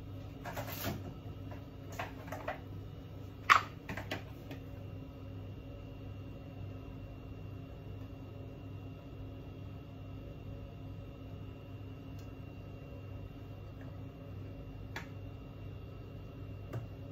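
A few short knocks and clicks of kitchen handling, the loudest about three and a half seconds in and one more near the end, over a steady low hum.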